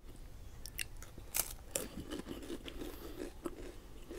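Close-miked chewing of crisp Superstix wafer sticks. There are a few sharp crunches in the first two seconds, then steady, softer chewing.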